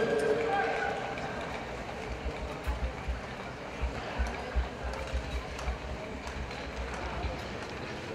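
Speed skates' blades scraping the ice in quick rhythmic strokes, about two a second, echoing in a large indoor rink. A voice is heard in the first second.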